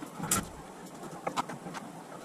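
Footsteps on a concrete floor and a plastic storage tote being carried and set down. There is a short scraping rustle near the start and a few light knocks about two thirds of the way through.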